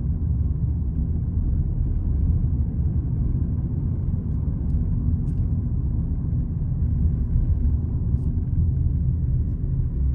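Steady low rumble inside a moving car's cabin: road and engine noise while driving, with a few faint ticks about halfway through.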